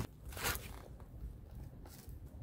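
Phone handling noise as the microphone brushes against a cotton T-shirt: one short scuffing rustle about half a second in, then a faint low rumble of movement.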